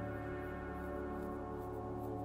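Steady ambient meditation music: a drone of several held tones in the manner of a singing bowl, unchanging throughout.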